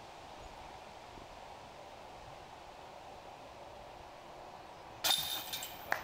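Quiet outdoor ambience, then about five seconds in a putted disc hits a disc golf basket: a sudden metallic jingle of the hanging chains, with a sharper clank just before the end.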